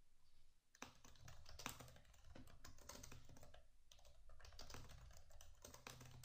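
Faint typing on a computer keyboard: a quick, irregular run of keystrokes that starts about a second in.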